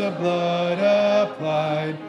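Congregation singing a slow hymn together with piano accompaniment, holding each note for about half a second before stepping to the next; it grows quieter near the end.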